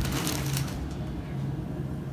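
Quiet room background: a low steady hum, with a faint rustle that fades out in the first moment.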